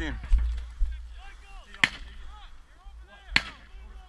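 Two sharp gunshots about a second and a half apart, with faint distant shouting between them and wind rumbling on the microphone.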